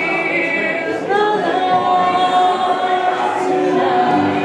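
Live singing in a pop-song medley, with voices holding one long note over electric keyboard accompaniment.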